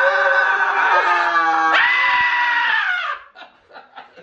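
Several people yelling and screaming together in long, held cheers that rise and fall in pitch, then stop about three seconds in.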